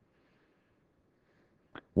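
Near silence: faint room hiss during a pause, with one short faint click near the end.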